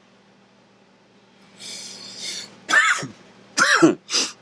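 A man coughing hard twice near the end, about a second apart, after a breathy rush of air: coughing on a lungful of e-cigarette vapor.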